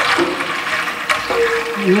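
Water poured in a steady stream from a jug into a stainless steel pot, splashing onto the pot's base.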